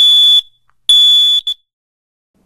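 Kidde smoke alarm sounding on its test button: two loud, high-pitched beeps of about half a second each, half a second apart, then a short blip, and it stops as the button is let go. The alarm answering the test button shows that it works.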